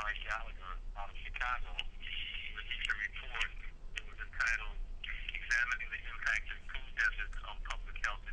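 A person speaking continuously in a thin, telephone-like voice cut off above the middle range, over a steady low hum.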